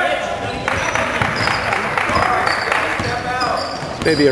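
A basketball being dribbled on a hardwood gym floor during a game, with spectators' voices and calls echoing around the gym.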